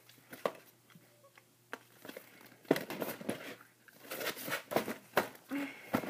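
A gift bag being rummaged through, its bag and wrapping rustling and crinkling with scattered light clicks. It is sparse at first and gets busier about halfway through.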